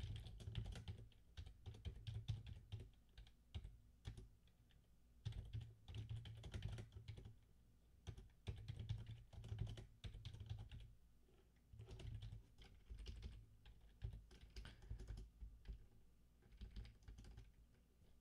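Faint typing on a computer keyboard: quick runs of keystrokes broken by short pauses.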